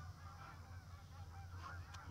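Faint honking calls over a steady low hum.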